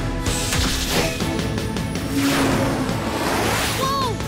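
Cartoon soundtrack music with a whooshing power-up sound effect. The whoosh swells through the second half and fades near the end.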